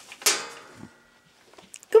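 A single sharp clatter about a quarter of a second in, followed by a faint ringing tone that dies away over the next second; a voice starts speaking at the very end.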